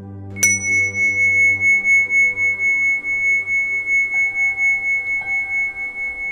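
A meditation bell struck once about half a second in, ringing with a single high, wavering tone that fades slowly, over soft ambient new-age music.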